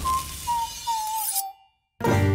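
Logo sting sound effect: a single whistle-like tone sliding slowly downward over a bright hiss, which cuts off suddenly about one and a half seconds in, leaving silence.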